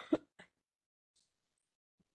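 A person clearing their throat right at the start, a brief rasp with a sharp catch and a small second hack, heard over a video-conference microphone.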